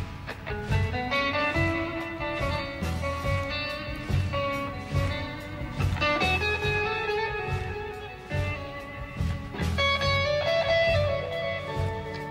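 Slow live blues-rock: an electric guitar plays long held lead notes with bends over bass and drums.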